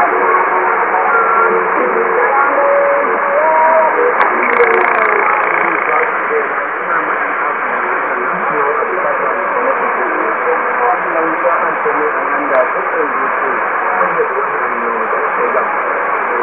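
Shortwave radio tuned to ZNBC Zambia on 5915 kHz: a faint voice under steady static hiss, with the sound cut off above about 3 kHz. This is weak long-distance reception.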